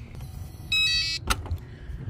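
A brief electronic chime or beep of several high tones at once, lasting about half a second, followed by a sharp click.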